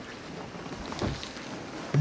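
A pause between spoken phrases: steady low background noise with no words, and one faint brief sound about halfway through.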